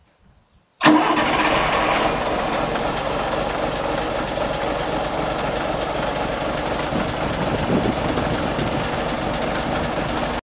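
Volvo Olympian double-decker bus's diesel engine starting up: it fires abruptly about a second in and settles straight into a steady idle.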